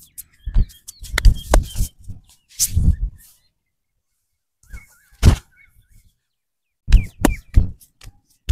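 Hard hand slaps and thumps on a man's back and shoulder during a rough massage, coming in irregular clusters with a pause of about a second and a half in the middle. A few bird chirps sound faintly in the background.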